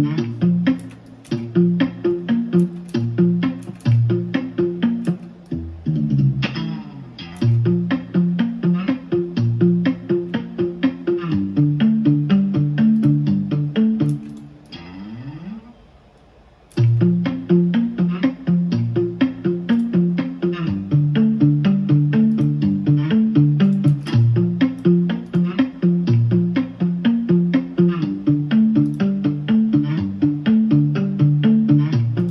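Playback of a sampled guitar loop from the Kontakt library Session Guitars Deluxe: a repeating plucked guitar chord pattern with a pitch slide between notes. It stops for about two seconds midway, then starts again.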